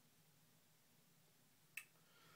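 Near silence: room tone, broken once near the end by a single short, sharp click.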